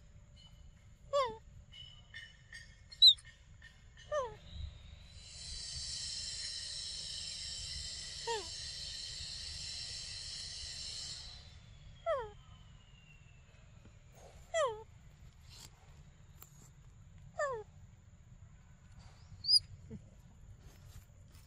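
A bird repeating a short, steeply falling whistle every two to four seconds, about six times, with a few sharp high chirps, the loudest about three seconds in. An insect, likely a cicada, buzzes steadily in the middle for about six seconds, then stops.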